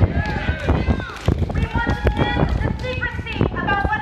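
Several voices overlapping in a crowd, none clearly words, over low thumps and rustle from a handheld phone being carried as its holder walks.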